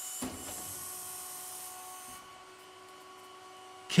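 Large electric motor rotor spinning on a dynamic balancing machine: a steady whir with a few faint steady tones, dropping quieter about halfway through.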